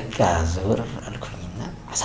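A man chuckling.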